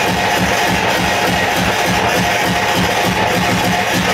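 Loud hardcore electronic dance music played over a club sound system during a live DJ set, with a fast, steady kick-drum beat under distorted synth sound.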